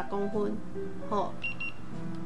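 Background music with a voice, and two short high beeps about one and a half seconds in from a handheld infrared thermometer taking a reading.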